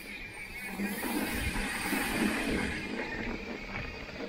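Mountain bike rolling fast down a dirt trail: tyre noise and rattling from the bike, with wind rushing over the camera microphone. It gets louder about a second in.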